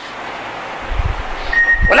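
Background hiss of a lecture recording during a pause in a man's speech, with a low rumble about halfway through. A thin steady whistle comes in near the end, just as his voice resumes.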